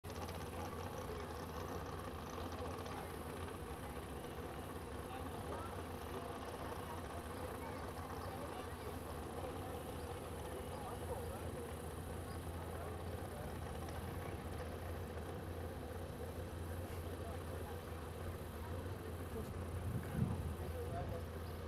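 Jet boat engine idling with a steady low rumble, under background voices.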